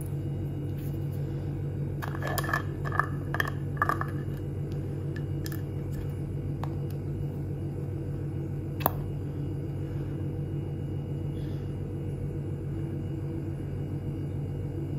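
Small clicks and clinks of a glass cosmetic jar as its lid is taken off and the jar is handled. A cluster comes about two to four seconds in, and one sharp click near nine seconds, over a steady low hum.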